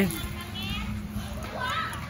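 Children's voices in the background: short high-pitched calls, once a little over half a second in and again near the end.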